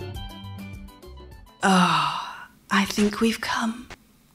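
Congolese rumba music fading out, followed by a voice giving a loud, breathy, drawn-out vocal sound that falls in pitch, then a few shorter voiced sounds.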